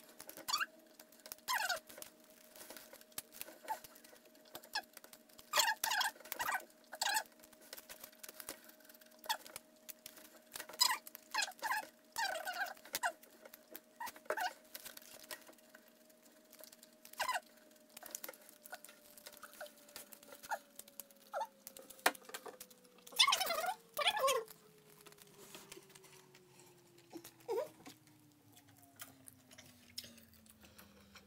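Eating sounds from someone chewing a burrito: wet chewing and mouth clicks in irregular bursts, the loudest cluster about three-quarters of the way through. Under them a faint steady hum slowly drops in pitch over the second half.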